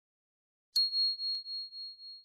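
A single high, clear ding like a small bell, struck about three-quarters of a second in and ringing on as it slowly fades: the notification-bell sound effect of a subscribe animation.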